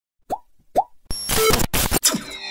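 Retro arcade-style electronic sound effects: two quick rising blips, then from about a second in a loud burst of static-like noise with a few beeping tones in it.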